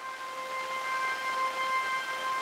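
A steady siren-like tone, one held pitch with several overtones over a faint hiss, slowly growing louder.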